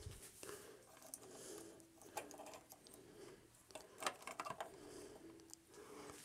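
Faint clicks and light knocks of a small posable mecha figure's joints and parts being handled and repositioned, with a cluster of sharper clicks about four seconds in.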